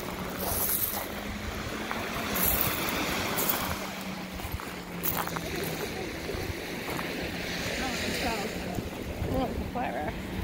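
Wind on the microphone and small lake waves washing onto the shore, with occasional footsteps crunching on pebbles.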